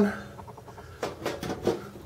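Sheet-metal side panel of an HP desktop computer case being fitted back onto the chassis: a quick run of light clicks and knocks in the second half.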